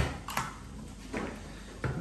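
Handheld single-hole paper punch pressed through a plastic plectrum cut from packaging: a sharp click right at the start, a fainter double click about a third of a second later, and another click near the end.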